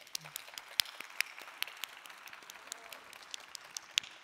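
Audience applauding: a steady patter of many hands clapping, with some louder single claps standing out.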